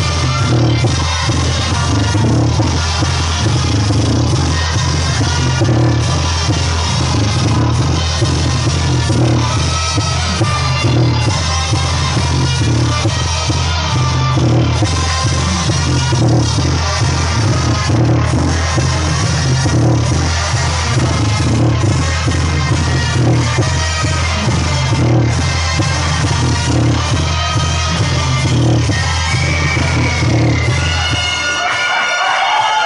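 Loud dance music with a strong bass and a steady beat, filling a crowded dance hall.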